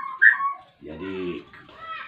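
Caged songbirds chirping in short whistled notes through the first half second, then a brief low voice-like sound about a second in, with faint chirps again near the end.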